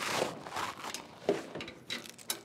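Handling noise from a compressed-air hose being picked up and moved: a short rustle at the start, one knock a little over a second in, and a few light clicks near the end.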